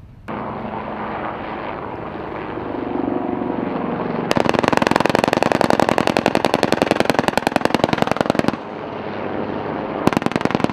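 Attack helicopter's turret cannon firing one long burst of about four seconds, a fast even stream of shots at roughly a dozen a second, over the steady beat and whine of the helicopter's rotor and turbines. The gun is the AH-1Z's three-barrel 20 mm M197 cannon.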